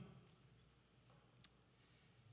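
Near silence: room tone, with one faint short click about one and a half seconds in.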